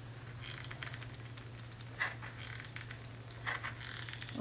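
Faint handling sounds from a hot glue gun being worked around the edges of a felt pad: soft scratching and rustling, with a light click about two seconds in, over a low steady hum.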